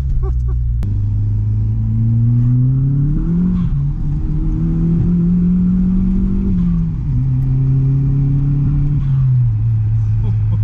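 Audi S3 replica's 1.8-litre turbocharged four-cylinder engine, heard from inside the car under way. The revs climb over the first few seconds and dip briefly, hold steady, then drop back in two steps, near seven and nine seconds.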